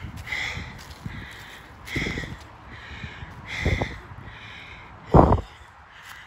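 A man breathing hard in slow, regular breaths, about one every second and a half, with low thumps in time with them; the loudest thump comes near the end. He is out of breath from climbing a steep hill.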